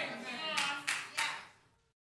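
A few scattered hand claps with faint congregation voices responding, fading away; about one and a half seconds in, the sound cuts off abruptly to dead silence.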